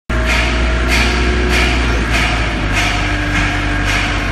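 A heavy engine running steadily with a deep hum, and a sharp clatter repeating about every 0.6 seconds.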